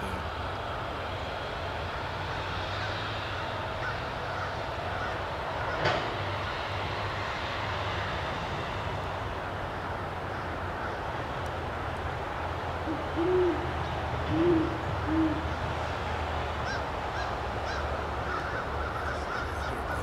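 Great horned owl hooting: three low hoots in quick succession a little past halfway, over a steady low background rumble.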